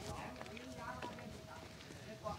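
Quiet outdoor background with a few soft taps, faint distant voices and a faint steady tone.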